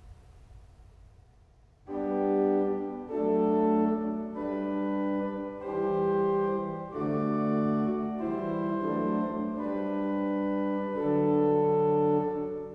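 Pipe organ (John-Paul Buzard, Opus 7, 1991) playing a string of about eight sustained chords, starting about two seconds in. Each chord is held roughly a second, with a short lift before the next, the separated chord-to-chord practice of play, move, check, play.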